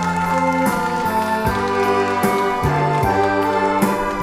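Saxophone ensemble playing a slow melody in held notes that change about every half second to a second, over low bass notes.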